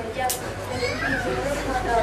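Indistinct children's voices and chatter, with a short sharp high click about a third of a second in.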